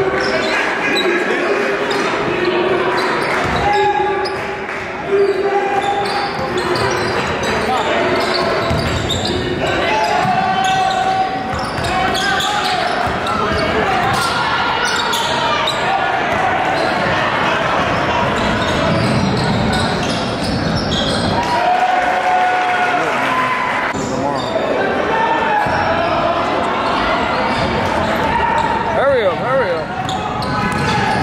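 A basketball being dribbled on a hardwood gym floor during live play, under a steady wash of crowd and player voices that echo in the large gym.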